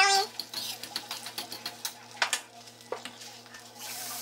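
A metal fork stirring and scraping beaten eggs in a ceramic-coated frying pan, with scattered light clicks and taps against the pan over a faint sizzle.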